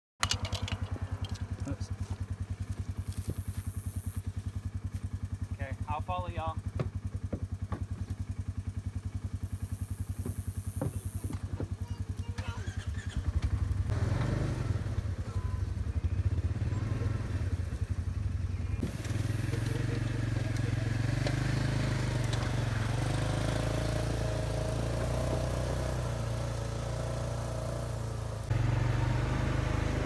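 Polaris side-by-side UTV engines idling, a steady low throb; it grows louder and fuller about thirteen seconds in.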